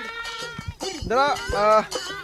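A group of people singing and shouting a festive Bihu chant in loud rising-and-falling calls, with a few sharp claps or drum beats.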